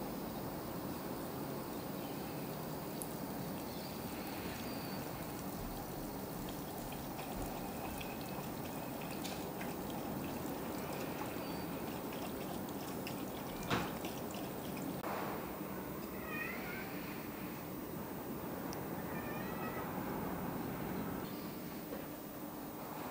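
Short chirping bird calls, a few in a row, over a steady outdoor hiss, with one sharp click in the middle.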